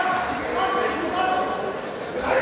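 Voices talking and calling out in a large sports hall, over a steady background hubbub of the hall.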